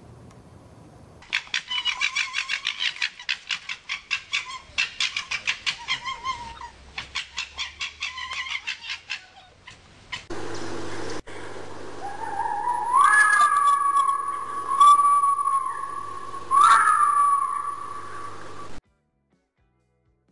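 Red foxes fighting. First comes a rapid stuttering chatter, the gekkering of a fox fight, lasting about eight seconds. Then come drawn-out whining cries that rise and fall in pitch, loudest in a few peaks, and they stop abruptly near the end.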